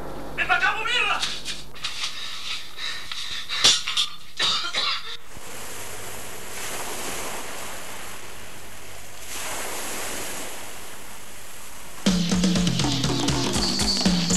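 A voice sounds briefly, then come a few sharp knocks. A steady outdoor rushing noise follows and swells twice. Near the end, music with drums and a bass line starts suddenly.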